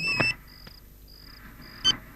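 Mobile phone sounding an electronic beep tone that cuts off with a click about a quarter second in. Short high pips then repeat about twice a second, and a brief key-press beep comes near the end.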